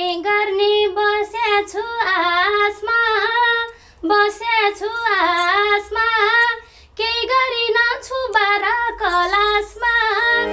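A woman singing a Nepali folk song solo and unaccompanied, in a high voice with ornamented, wavering pitch. She breaks off briefly twice, about four and seven seconds in.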